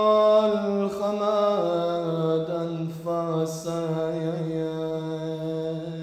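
A solo man's voice chanting a slow lament, holding long notes that step down in pitch about one and one and a half seconds in, then one long wavering note that fades near the end.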